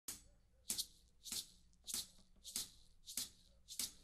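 A handheld shaker shaken in a steady beat, about one and a half strokes a second, seven short strokes in all, before any other instrument comes in.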